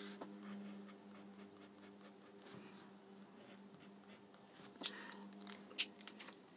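Faint scratching of a felt-tip pen shading small circles in on sketchbook paper, over a low steady hum, with two small clicks near the end.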